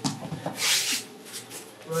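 Bodies and feet scuffing and rubbing on a wrestling mat as a high-crotch shot finishes and the wrestlers come back up, with one longer hissing scuff about half a second in.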